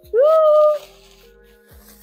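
A woman's short wordless vocal sound, rising in pitch and lasting under a second, over quiet background music with steady held notes. Faint rustling of bubble wrap being handled.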